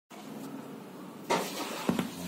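Handling noise from a phone held close to its microphone as it is adjusted: a faint rustle, then a louder scrape about a second in and a sharp knock near the end.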